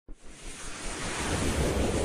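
Intro sound effect: a rushing, wind-like whoosh swelling in loudness, with a low rumble underneath.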